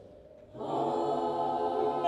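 Mixed choir singing a cappella: after a short pause, the whole choir comes in together about half a second in and holds a sustained chord.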